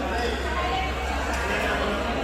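Overlapping chatter of voices echoing in a large indoor sports hall, over a steady low hum.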